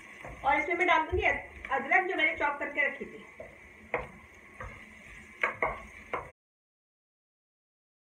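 A woman talking briefly, then a few sharp knocks of a wooden spoon against a metal cooking pot as she stirs chopped onion. The sound cuts off suddenly about six seconds in.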